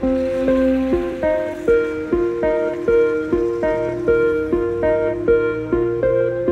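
Background music played on a plucked string instrument: a steady, repeating pattern of picked notes, about two to three a second.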